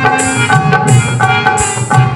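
Devotional bhajan music: a harmonium holding chords over a steady hand-drum rhythm, with a bright high beat landing about every 0.7 seconds.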